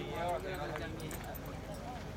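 Indistinct voices of people talking in the background, with scattered light clicks and knocks over a low steady hum.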